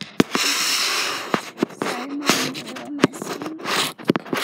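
Rustling, scraping and knocking of a phone being handled and moved right against its microphone, with a run of sharp clicks.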